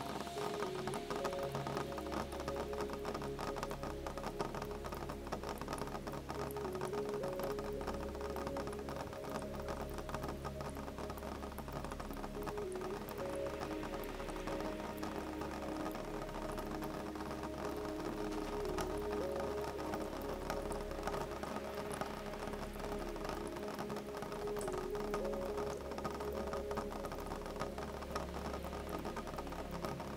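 Calm, slow music with long held notes and a low bass underneath, over gentle rain pattering on a window as a dense, even stream of fine drop ticks.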